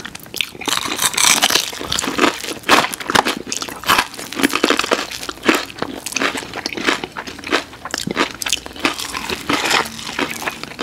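Close-miked chewing and crunching of breaded, fried boneless chicken wings by two people, with many irregular crisp bites close together.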